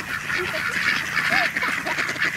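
A flock of mallards and white domestic ducks quacking together in a dense, overlapping chatter, with a few short separate calls standing out. The ducks are crowding in, wanting food.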